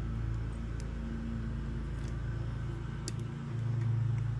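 Steady low hum from the workbench electronics, swelling slightly near the end, with a few faint light clicks.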